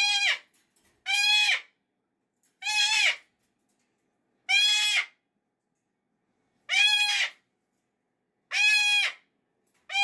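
Salmon-crested (Moluccan) cockatoo screaming: about seven harsh, pitched calls, each around half a second long, one every second or two. The calls are a screaming fit of displeasure.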